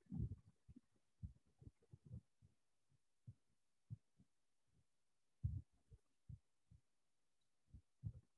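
Near silence, broken by faint, irregular low thuds and bumps.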